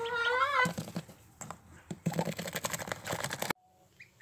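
Nest bedding in a Muscovy duck's nest box rustling and crackling as the nest is disturbed, a dense run of small irregular clicks that stops abruptly about three and a half seconds in.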